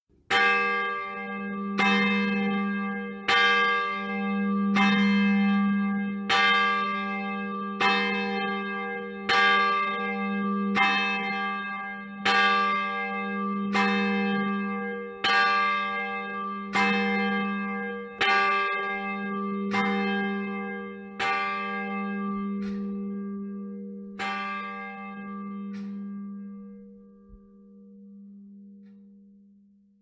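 A church bell tolling about seventeen times, one strike every second and a half, each strike ringing on into the next. The last strike dies away near the end. It is the call to worship before the service begins.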